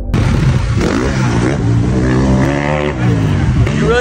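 Dirt bike engine revving, its pitch rising and falling several times over a steady rushing noise.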